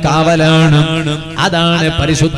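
A man's voice chanting in a sung, melodic style into a microphone, holding long notes that waver slightly, with a short break about one and a half seconds in.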